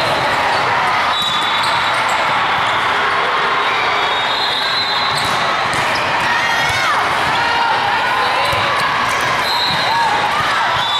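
Steady din of a large sports hall during volleyball play: background chatter from many people, sneakers squeaking on the court and balls being hit.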